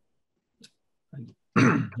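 A pause with almost no sound, then a man clears his throat once, loudly, near the end, running straight into his speech.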